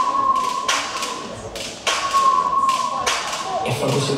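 A few sharp thumps, spaced roughly a second apart, as skipping ropes and jumpers' feet strike a sports-hall floor, over a steady held tone from the routine's music.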